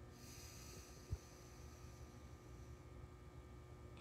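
Near silence: faint room tone, with one soft low thump about a second in.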